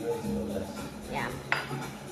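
Dishes clinking on a kitchen countertop, with one sharp clink about one and a half seconds in.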